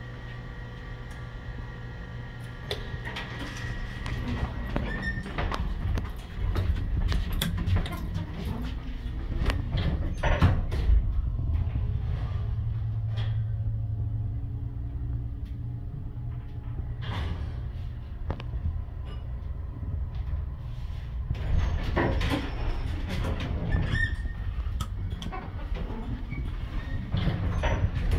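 A 1982 Dover hydraulic passenger elevator in use: a thin steady tone for the first few seconds, then the door sliding and a steady low hum of the hydraulic machine as the car travels, with knocks and clicks along the way.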